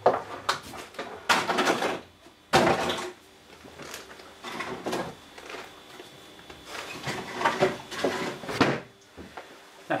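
Thin clear plastic food container being crushed by hand, crackling and crunching in short bursts, followed by knocks from the plastic lid of a wheelie bin as it is handled and the plastic goes in.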